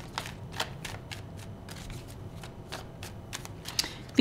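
A tarot deck being shuffled by hand: a quick run of light card clicks and flicks, about four a second.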